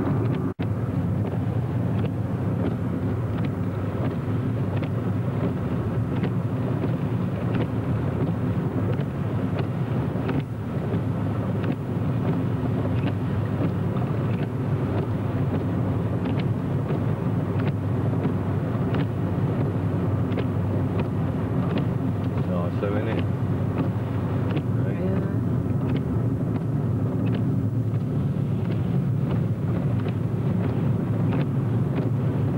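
Steady car cabin noise of engine and tyres on a wet road while driving, with faint scattered ticks.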